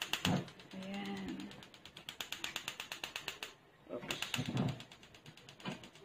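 Rapid, evenly spaced clicking of a gas stove's electric igniter as the burner under the wok is lit. The clicking pauses about three and a half seconds in, then starts again for a second run.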